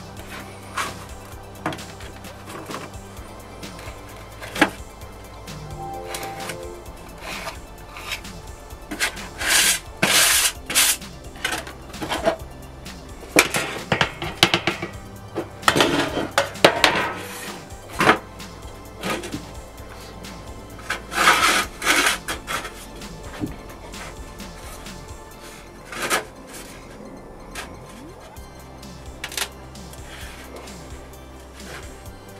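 Background music with steady low notes, over scraping, rubbing and knocking as excess casting sand is scraped off a sand-packed metal casting ring on a metal tray to leave a flat face. The loudest sounds are several harsh scrapes about ten, fifteen and twenty-one seconds in, between lighter clicks and taps.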